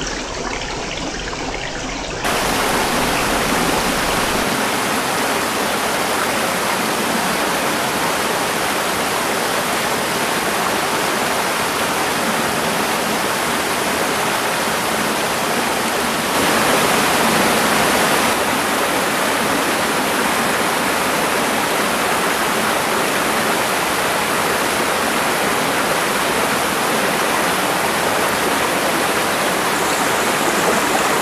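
Mountain stream water rushing down a narrow rock chute and over small cascades, a steady rush of white water. It grows louder about two seconds in, and louder again for a couple of seconds just past the middle.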